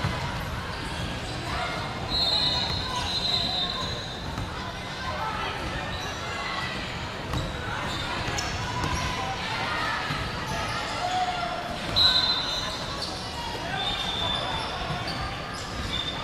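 Busy indoor basketball stadium: indistinct chatter of many voices and basketballs bouncing on the hardwood floor, echoing in the large hall. A few high-pitched squeals cut through, at about two seconds and again, loudest, at about twelve seconds.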